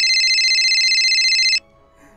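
Mobile phone ringing: a high electronic trilling ring that cuts off suddenly about one and a half seconds in.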